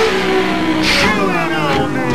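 Rock band playing loudly live: a singer's voice sliding up and down in pitch over electric guitar and drums.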